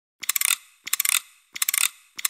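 Ratchet-like mechanical clicking in three short bursts of rapid clicks, about two-thirds of a second apart.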